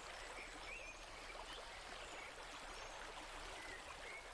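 Faint, steady outdoor background hiss with a few faint, short, high chirps scattered through it.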